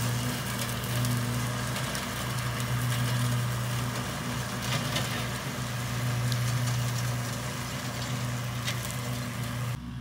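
Kubota L2501 compact tractor's three-cylinder diesel running steadily under load at working speed, driving a rear finishing mower off the PTO, with its fuel and injection timing turned up.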